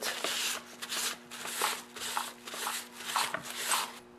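Paper towel wiping and rubbing the dirty housing around the clutch drum of a Stihl MS 250 chainsaw, in short repeated strokes, about three a second.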